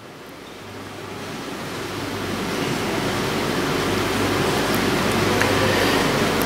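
Steady hiss of background noise with a low hum, growing gradually louder, with a few faint clicks.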